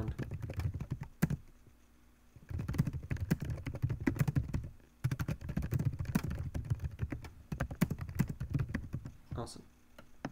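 Fast typing on a computer keyboard: quick runs of keystrokes, after a single key press and a short pause in the first couple of seconds.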